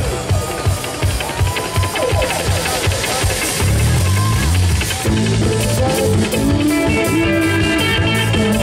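Live rock band playing a song: electric guitar, bass guitar and drum kit keeping a steady beat, with a woman singing.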